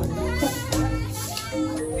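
A crowd of children's excited voices, calling and chattering over each other, over a background music bed.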